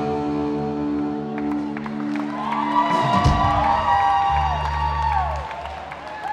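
Live rock band letting a final held chord ring for about three seconds, then a thump and a held low bass note, while high whoops from the audience rise and fall over it.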